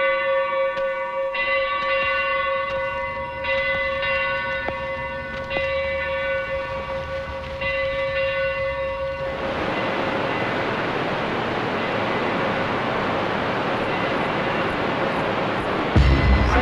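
A long horn-like blast holding one steady note for about nine seconds, then a steady rushing roar until the end.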